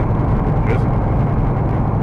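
Steady low drone of a semi-truck's engine and road noise heard inside the cab while driving.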